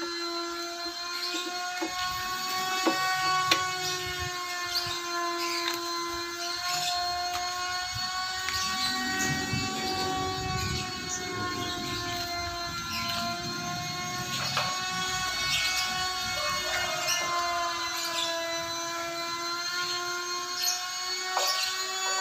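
A motor running with a steady pitched hum whose pitch wavers slowly up and down, with light clicks and knocks now and then.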